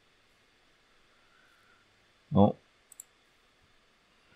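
Two quick computer mouse clicks, a split second apart, about three seconds in, just after a short wordless hum of the voice. The rest is near silence in a small room.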